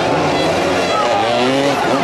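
Several motoball motorcycles' engines revving up and down over the voices of the crowd.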